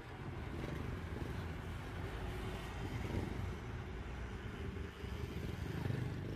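Street traffic: passing vehicles, a motorcycle among them, a steady low rumble that swells about three seconds in and again near the end.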